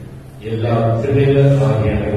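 A priest's voice intoning a liturgical prayer in a chant on a steady held pitch, resuming after a short pause about half a second in.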